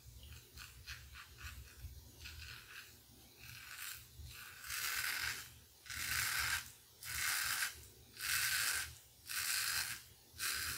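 Merkur 34C double-edge safety razor with a Voskhod blade scraping through two days' stubble under lather. Quick short strokes come first, then about five longer, louder strokes, roughly one a second, in the second half.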